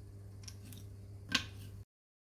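Small wooden mould frames being handled and set down on a board: a few light clicks, then one sharp tap about a second and a half in, over a low steady hum. The sound cuts off suddenly just before the end.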